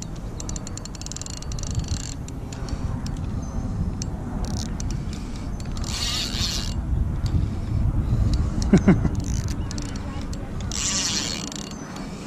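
A spinning reel is cranked against a hooked plecostomus, with three short bursts of buzzing from the drag as the fish takes line: the drag is set too loose. A steady low rumble of wind on the microphone runs underneath.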